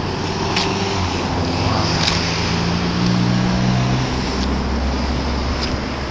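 Street traffic: steady road noise, with a passing car's low engine hum standing out from about one second in until about four seconds.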